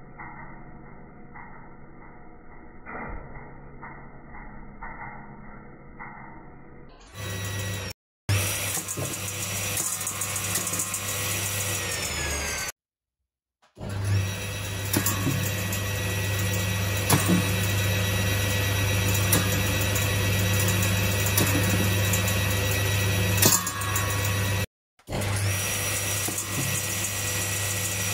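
Circular saw blade spinning at speed: a loud, steady motor hum with a high whine, and a couple of sharp hits as pears drop onto the blade and are shredded. The first several seconds are muffled and quieter, with a slow regular pulsing, before the saw sound comes in at full volume about seven seconds in.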